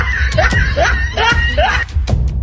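A person's voice crying out in short rising shrieks, about four in two seconds, over background music with a steady bass beat.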